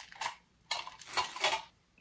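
A small metal bandage tin being handled, its lid and sides clinking and rattling in about three short bursts.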